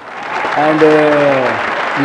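Audience applause, building over the first half second and then holding steady, with a man's drawn-out "and" into a microphone over it.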